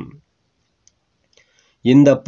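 A short pause in a reading voice: near silence with a couple of faint clicks, speech trailing off at the start and resuming near the end.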